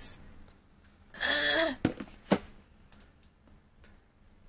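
A short, breathy sound from a person's voice about a second in, followed by two sharp clicks.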